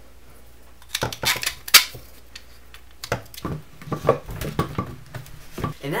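Hard plastic parts handled on a table: a scattered run of clicks and knocks, the sharpest a little under two seconds in, as a 3D-printed plastic grip is slid onto a painted PVC pipe.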